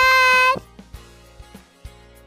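Soft background music with steady held notes. It follows a loud, high-pitched held tone that cuts off about half a second in.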